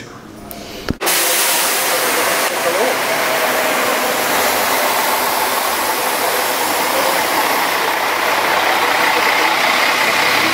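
Coach bus running as it drives off: a steady, loud engine and road noise that starts abruptly about a second in, with a strong hiss over it.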